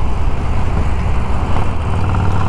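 Motorcycle engine running steadily at cruising speed, with wind and road noise, heard from the rider's seat.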